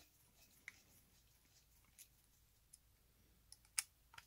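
Near silence broken by a few faint, sparse clicks of a hex driver turning small cap screws into a plastic spur gear, the loudest near the end.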